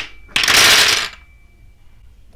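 Wooden dominoes clattering onto a table as a stacked domino tower collapses: one dense burst of clatter, under a second long, starting about a third of a second in.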